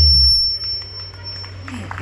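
A live band's final held chord, bass and guitar, ringing out and fading away in about half a second. A thin, steady high tone lingers after it, and voices from the crowd start up near the end.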